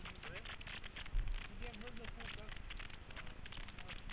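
Faint voices over a steady crackle on the microphone, with one dull thump about a second in.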